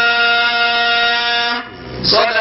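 A man's voice holding one long, steady note at the end of a chanted phrase, stopping about a second and a half in.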